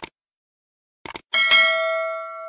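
Sound effects for a subscribe-button animation: a mouse click, then a quick double click about a second in, followed by a notification bell ding that rings with bright overtones and slowly fades.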